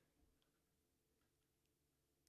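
Near silence: the very quiet noise floor of a Shure MV7 dynamic microphone recording an empty pause, with no hiss to be heard.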